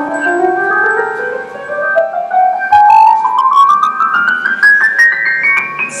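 Synthesized piano-like notes generated from a plant's signals by a plant-music device, climbing step by step in a steady rising run of notes.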